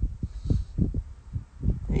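Irregular low thumps and buffeting on a phone's microphone, several a second.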